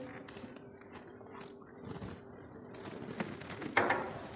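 Faint handling sounds of small plastic paint jars being moved and set down on paper: a few light taps, the clearest near the end.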